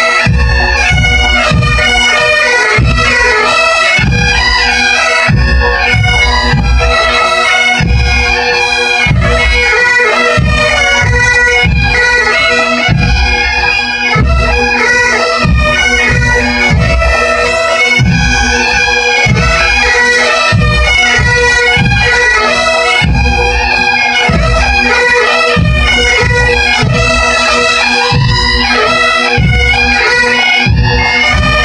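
Massed pipe bands: dozens of Great Highland bagpipes playing a tune in unison over their steady drones, loud throughout, with a bass drum beating a regular pulse about twice a second.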